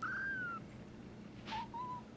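A very young kitten mewing: one thin, high mew about half a second long that dips in pitch at its end. Near the end come two short, lower mews, just after a brief scratchy noise.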